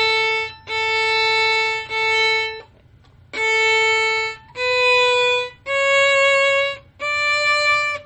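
Violin playing plain, full-length quarter notes with the bow staying in the string the whole time: low-velocity 'rowboat' notes, not staccato. Several even notes on one pitch, a short break about two and a half seconds in, then notes stepping up in pitch.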